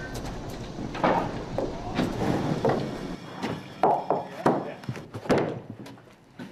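Sawn lumber being handled, with irregular wooden knocks and clatters about a second apart as boards are set down and stacked. A low engine hum runs under the first few seconds and then stops.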